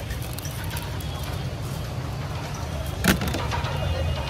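Steady low rumble of street traffic, with one sharp knock about three seconds in.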